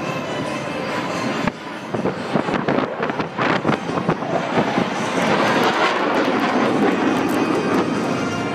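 Music for about the first second and a half, then cut to the live roar of the Thunderbirds' F-16 Fighting Falcon jets flying past in formation. The roar is rough with many sharp crackles and fills out and grows steadier from about five seconds in.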